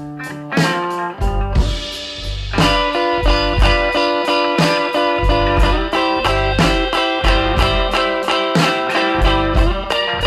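Electric blues band playing an instrumental passage: guitar chords over a bass line and a steady beat about twice a second.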